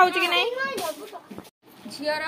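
A small child's high, wavering voice for about the first second, fading away, then a sudden brief break and a woman's voice starting near the end.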